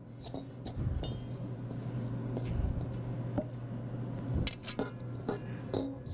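Floured hands gathering and pressing soft bread dough in a stainless steel mixing bowl: squishing and rubbing against the metal, with a few light clicks and knocks. A steady low hum runs underneath.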